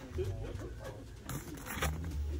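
Plastic blister packaging of a carded diecast car crinkling as it is turned in the hand, loudest for about half a second in the second half, over faint talking in the background.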